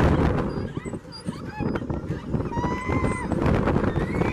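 Riders on a swinging fairground ride screaming and shouting, with rushing wind on the microphone strongest in the first second; one long, held scream comes about two and a half seconds in.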